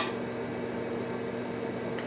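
Steady electrical hum with a faint buzz, the garage's room tone.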